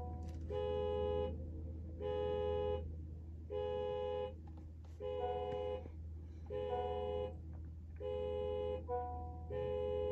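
A car's dashboard warning chime with the ignition switched on: a two-note electronic chime repeating about every second and a half, seven times, over a steady low hum.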